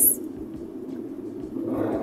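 Steady low rumble of a car interior, engine and road noise heard inside the cabin.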